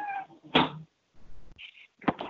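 The end of a drawn-out pitched animal cry that slides downward, heard over a teleconference phone line, then a short sharp noise about half a second in.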